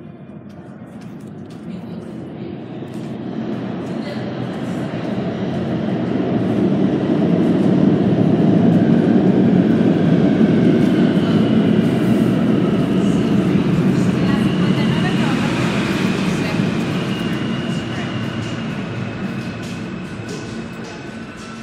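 Subway train passing through the station, its rumble swelling to a peak about eight seconds in and then slowly fading. Thin, high steady tones sound over the rumble in the second half.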